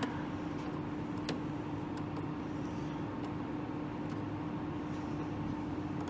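A steady background hum, one tone held over a low rumble, with a few faint small clicks from wires and a screwdriver being handled at a terminal block.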